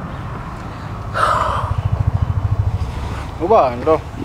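Low, evenly pulsing engine rumble of a vehicle passing on the road, strongest from about a second in to past three seconds. A short hissing breath comes about a second in, and a brief voice near the end.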